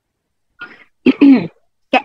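A person's voice gives a short cough about a second in, after a faint breathy sound, between phrases of speech. Talking starts again near the end.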